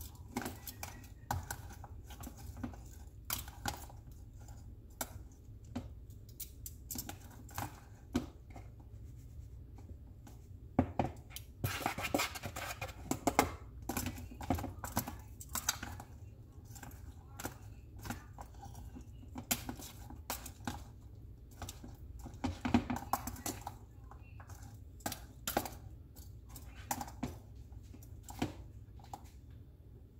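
Metal kitchen tongs clicking together and tapping against a plastic container while tossing cut okra in a wet coating: irregular light clicks and clatters, busiest about halfway through.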